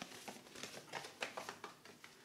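Paper paint colour chart being folded and handled by hand: light, irregular rustling and crinkling with small clicks of the card.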